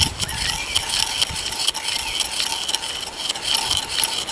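A flat spade bit boring into the end grain of a sawn log round: a rapid, irregular clicking and scraping chatter of the blade cutting wood.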